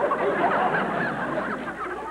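Studio audience laughing, the laughter slowly dying down toward the end.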